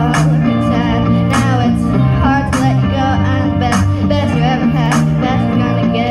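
Karaoke backing track with bass, guitar and a drum hit about every second, played through a sound system, with two girls singing along into microphones.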